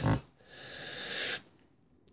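A man's breath drawn in, a soft hiss that grows louder for about a second and stops abruptly, just after a short 'mm'.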